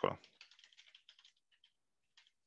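Computer keyboard typing: a quick run of about a dozen faint keystrokes, stopping shortly before the end.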